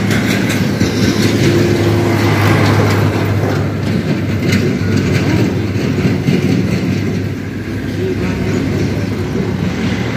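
Loud, steady low rumble with a constant hum underneath, easing slightly about seven seconds in.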